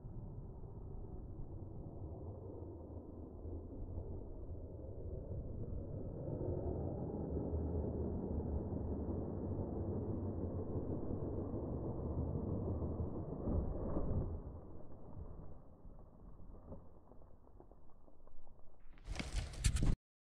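Slowed-down audio of a Losi Tenacity RC truck driving off a dirt pile and backflipping: a deep, muffled rumble of its motor and tyres on dirt, lowered in pitch by the slow motion. It grows louder in the middle, and a thump comes about fourteen seconds in before it dies down.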